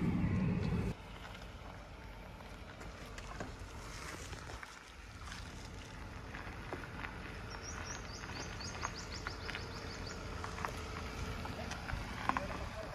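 Hyundai Grand i10 hatchback driving slowly over a rough, stony dirt track: a faint engine with small crunches and clicks from the tyres on stones. A bird gives a quick run of high chirps about two-thirds of the way in.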